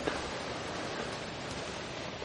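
Steady, even hiss of outdoor background noise with no distinct events.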